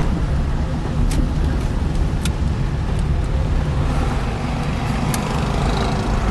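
Steady low rumble of a car's engine and tyres on the road, heard from inside the cabin while driving, with a few faint clicks.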